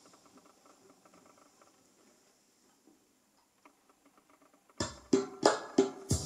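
Near silence for about five seconds, then a nylon-string classical guitar begins the intro: four sharp plucked notes or chords in quick succession near the end.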